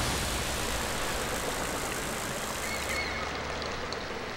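Cartoon sound effect of rushing water, a steady hiss that slowly fades.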